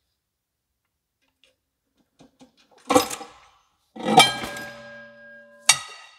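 Metal clanks as the bare V8 engine block, hanging from a hoist chain, is pulled free of the transmission. There is one clank about three seconds in, then a louder one a second later that keeps ringing for over a second, and another sharp clank with ringing near the end.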